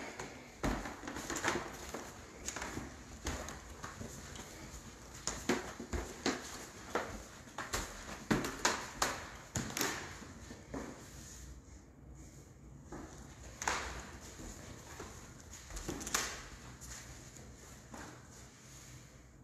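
Footsteps on a refinished hardwood floor, a step roughly every half second for the first ten seconds, then only a few scattered steps.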